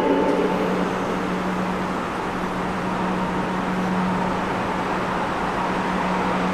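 Steady rushing noise and a constant low hum from an ICE 3 high-speed electric train running away along curved track.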